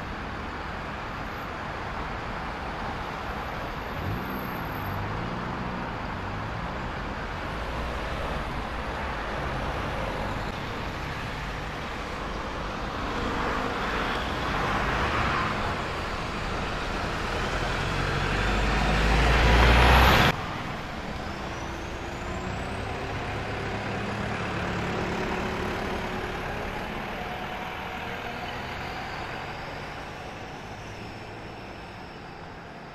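Diesel engine of a Stagecoach double-decker bus pulling away round a roundabout and passing close by, its pitch shifting as it accelerates and growing louder until it cuts off suddenly about two-thirds of the way through. Quieter bus and traffic engine sound follows.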